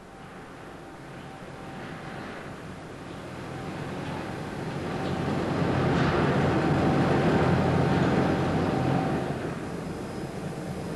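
Rotopark automatic car park's vertical chain conveyor running as it lowers a car down the shaft: a steady mechanical whir with a faint steady hum, growing louder over the first six seconds and falling away shortly before the end.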